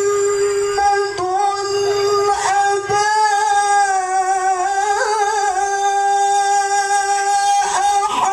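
A man reciting the Quran in the melodic tilawah style, holding one long sustained note that wavers briefly about five seconds in.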